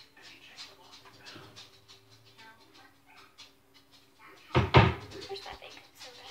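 Someone rummaging in a kitchen cupboard: light knocks and rustles, then a loud clatter about four and a half seconds in.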